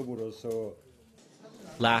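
Speech only: a man's voice for under a second, a short near-silent pause, then another man's voice starting near the end.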